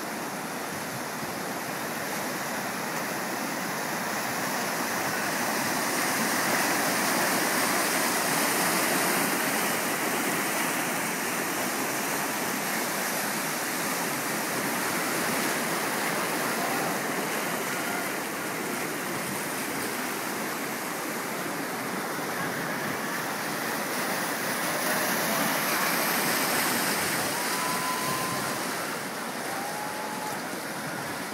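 White water rushing through a concrete artificial slalom course channel: a steady noise of churning rapids that grows louder for a few seconds, twice.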